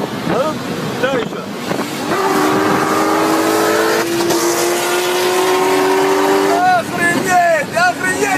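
A sports car's engine at high revs under hard acceleration, its pitch climbing slowly and steadily for about four seconds. Voices come before it and break in again when it stops.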